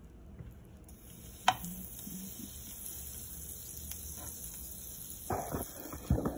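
Sandwich frying in margarine in a nonstick pan: a steady sizzle that comes in about a second in, with one sharp click just after. Near the end a utensil pushes and scrapes in the pan.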